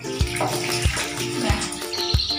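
Water poured from a plastic dipper splashing over a wet Himalayan cat, under background music with a steady beat.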